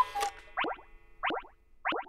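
A run of short cartoon 'boing' sound effects, one every half second or so, marking the beats of a five-beat conducting pattern.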